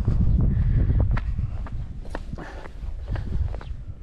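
Footsteps on a paved path, about two a second, over a low rumble of wind on the microphone.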